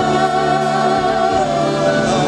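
Slow show music: a choir singing long, held notes with a slight waver over orchestral backing, the melody stepping down about one and a half seconds in.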